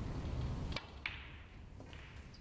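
Snooker balls clicking: two sharp clicks just under a second apart, then quieter. The clicks follow a low rumble that stops abruptly.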